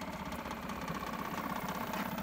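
Engine idling steadily with an even, rapid beat, growing slightly louder towards the end.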